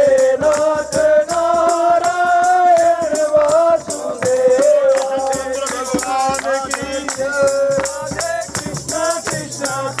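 Men singing a Hindu devotional bhajan in unison through a microphone and PA, kept in time by a handheld plastic clapper rattling on a steady beat, with hand clapping.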